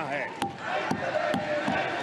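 Members of parliament thumping their desks in approval: three sharp knocks about half a second apart over a din of many voices in the chamber.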